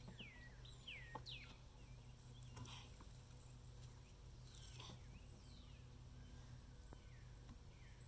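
Near-silent garden background: a few faint bird chirps falling in pitch in the first second or so, over a steady high, thin insect-like whine, with a few soft clicks of soil and potatoes being handled.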